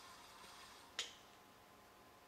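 Near silence with a single short, sharp click about halfway through that dies away quickly.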